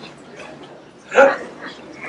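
A single short, sharp vocal yelp about a second in, over faint murmuring.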